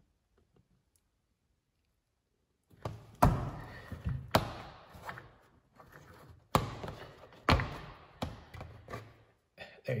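Sharp, irregular knocks on a hard plastic dash panel, about six of them starting around three seconds in, as a molded switch knockout that has been scored around with a razor blade is pressed on by hand until it breaks free.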